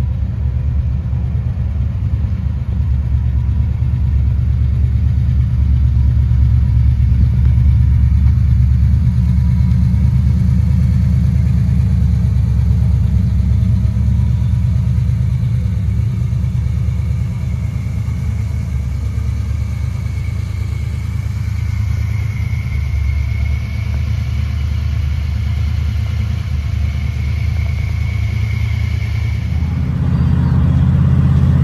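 Chevrolet Impala's engine idling with a steady, deep exhaust rumble through its newly fitted exhaust.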